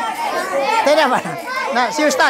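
A group of boys' voices calling out over one another, chanting the same short name again and again.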